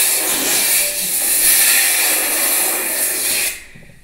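Water spraying from a handheld shower head into a bathtub as the tub is filled, a loud steady hiss that cuts off about three and a half seconds in.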